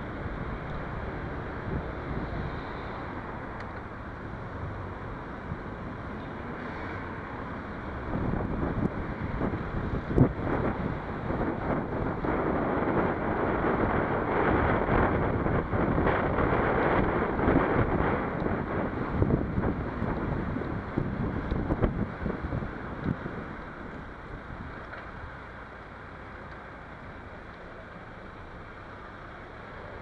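Wind rushing over the microphone of a camera on a moving bicycle, mixed with road and traffic noise. It grows louder about a third of the way in and eases off for the last several seconds.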